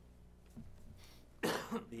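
A single cough, short and loud, about one and a half seconds in, in a small meeting room.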